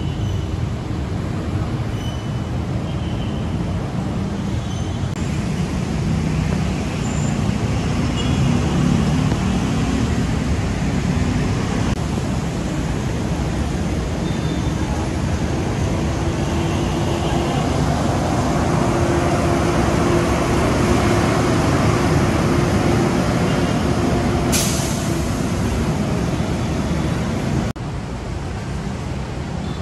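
Heavy city traffic of cars, buses and trucks running past, a steady rumble of engines and tyres, with a short sharp hiss near the end.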